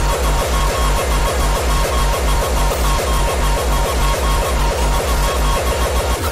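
Hardcore gabber DJ mix: a fast, steady kick drum under dense electronic synth sounds, with a quick run of closer-spaced kicks near the end.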